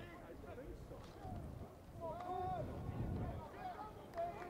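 Indistinct shouting and calls from several voices of players and coaches on an outdoor football practice field, over a low rumble of field noise, with a few short sharp cracks in the second half.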